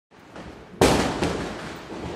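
Firecracker bang a little under a second in, a smaller second bang about half a second later, then a steady noisy din of fireworks going off.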